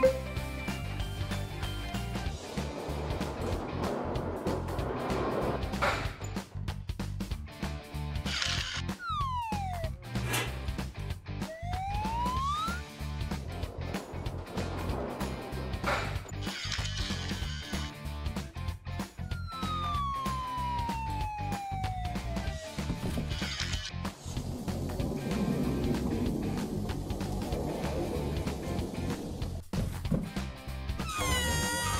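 Cartoon background music, with a few sliding-pitch sound effects over it: a short falling one about nine seconds in, a rising one about twelve seconds in, and a longer falling one around twenty seconds in.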